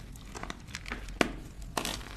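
Blocks of gym chalk crushed and crumbled between bare hands: irregular dry crackles and crunches, with one sharp snap a little past the middle and a dense run of crackling near the end.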